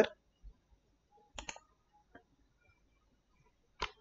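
Computer mouse clicking: a quick pair of faint, sharp clicks about a second and a half in and one more short click near the end, with near silence between.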